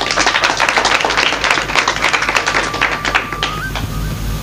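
Audience applauding in a dense patter of claps that fades out about three and a half seconds in. A thin steady high tone runs underneath.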